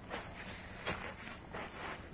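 A few soft footsteps of a person walking, with faint handling noise around them.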